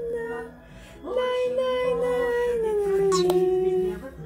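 A song playing, with a voice holding long sung notes over a steady accompaniment. A short lull comes about half a second in; then one long note is held and sinks slightly near the end.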